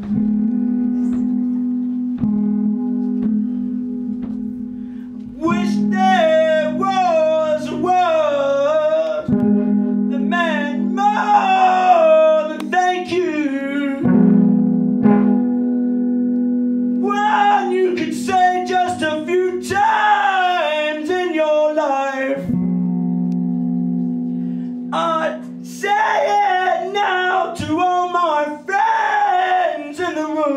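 Live solo song: an electric guitar played through an amplifier lets long chords ring out, and a man starts singing over it about five seconds in, in phrases separated by pauses in which the guitar rings on alone.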